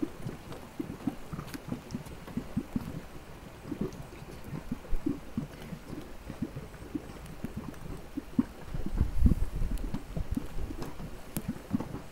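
Thick mud in a hot-spring mudpot bubbling, with an irregular run of low plops and blurps as gas bubbles burst through the mud. A louder low rumble comes about three-quarters of the way through.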